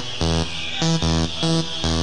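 Early-1990s rave music from a live DJ set: a riff of short, evenly spaced pitched notes repeats over a deep bass line, with short hissing hits in between.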